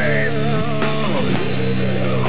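Sludge metal band playing live: distorted guitars, bass guitar and drums, with notes bending downward in the first second.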